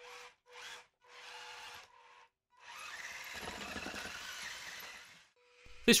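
Small electric drive motors of a 3D-printed omnidirectional tracked robot whining in a few short bursts as its plastic tracks move on carpet, then a longer stretch of steady motor and track noise lasting a couple of seconds.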